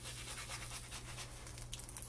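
Spatula scraping and sliding under a pancake in a nonstick frying pan, with faint sizzling of the batter, and a few light clicks of the spatula near the end.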